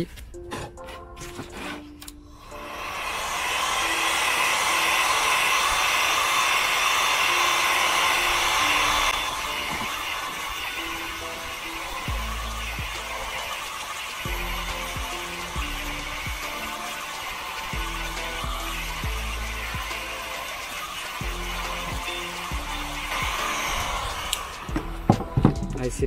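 Electric heat gun switched on a couple of seconds in and blowing steadily, heating a Kydex sheet to soften it for folding. It drops a little in level about nine seconds in and stops shortly before the end. Background music with a low bass plays underneath.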